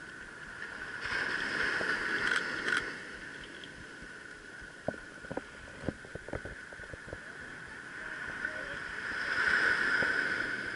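Small ocean waves breaking and washing up the beach, swelling twice, about a second in and again near the end. A few light clicks come in the middle, from handling of the camera.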